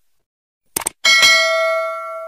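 Subscribe-button sound effect: a short double click, then a notification-bell ding about a second in that rings on and slowly fades.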